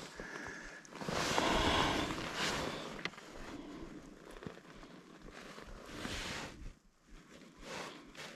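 Rustling and scraping handling noise, loudest in the first couple of seconds, with a few light clicks, then growing quieter.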